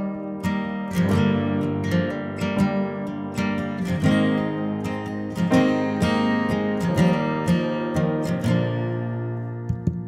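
Instrumental break of an acoustic song, with acoustic guitar strumming and an upright piano playing chords, getting quieter near the end.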